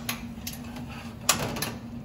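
A spatula scraping and knocking against a porcelain ramekin as fond de veau is scraped from it into a saucepan: a few sharp clicks, the loudest a little past halfway, over a steady low hum.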